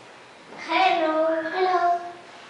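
A child calling "Hello! Hello!" in a drawn-out, sing-song voice, two phrases starting about half a second in.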